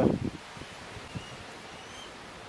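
Steady, soft outdoor breeze: an even hiss of wind moving through leafy trees and over the microphone.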